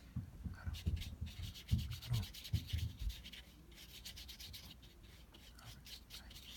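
A watercolor brush rubbing across paper in a run of short dry strokes, stronger in the first half and fainter after, with a few low bumps mixed in.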